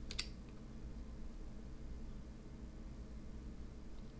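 Faint steady hum of room tone, with one short sharp click near the start, the sound of a computer mouse button.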